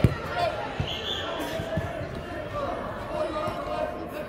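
A soccer ball being kicked on indoor artificial turf: one sharp thump just after the start, then a few softer thumps of the ball, over background voices from the sidelines.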